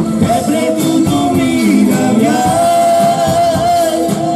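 A live Romani band plays dance music: a man sings a melodic line over keyboard, electric guitar and drums, holding one long note about halfway through.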